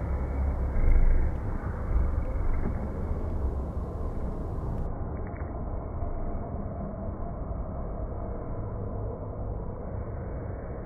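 Steady low rumble of background room noise, dull and muffled, with a louder bump about a second in.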